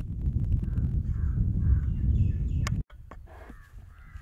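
Short bird calls in the background over a low rumble; the rumble cuts off abruptly about three seconds in, and the calls carry on more faintly after it.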